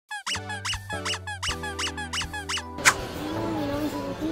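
Intro jingle made of a quick run of cartoon-style squeak sound effects, about four a second, over sustained music chords. It ends in a single sharp pop just before three seconds in, followed by a wavering melody.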